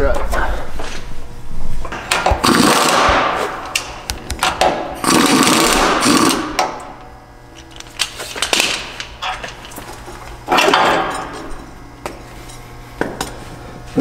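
Power tool running in four short bursts of about a second each, with clicks between them, while a truck's front strut coil spring is being compressed in a strut spring compressor.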